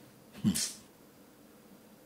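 A person's short, quiet vocal sound with a breath, falling in pitch, about half a second in, in a pause between spoken lines.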